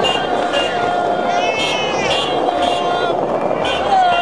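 High-pitched voices calling out in long, drawn-out tones, some rising and falling, over a steady din of street and crowd noise.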